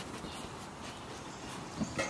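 Samoyed puppies, about five weeks old, moving and playing on a wooden deck, with a few short, louder low sounds near the end.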